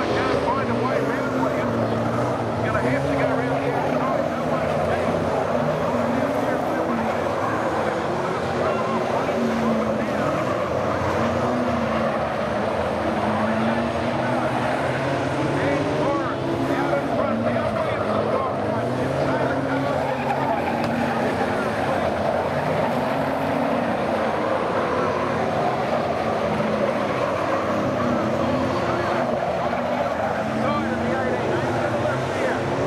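A field of V8 dirt-track saloon cars racing on a speedway oval. Several engines are heard at once, their revs rising and falling again and again as the cars power out of the turns.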